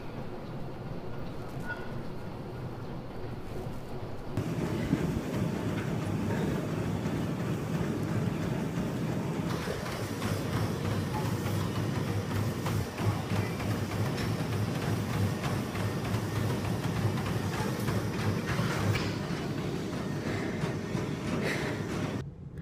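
Gym cardio machines running, a treadmill and then an elliptical trainer: a steady rhythmic mechanical rumble that changes abruptly at a couple of cuts.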